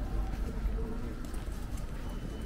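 Busy city street ambience: a steady low rumble of traffic and crowd, with a soft, low cooing call about half a second in.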